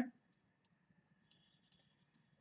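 Faint scattered ticks and light scratching of a stylus writing on a pen tablet, very quiet against near silence.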